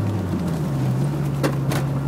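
Toyota MR2 AW11's four-cylinder engine running steadily, heard from inside the cabin over road noise as the car drives; its note changes pitch about half a second in. Two faint knocks come in the second half.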